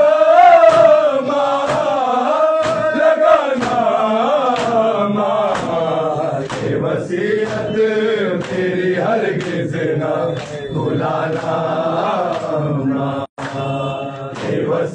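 A crowd of men chanting a nauha, a Shia mourning lament, in unison, with the slaps of matam (hands beating bare chests) keeping a steady beat a little under two per second. The sound drops out for an instant near the end.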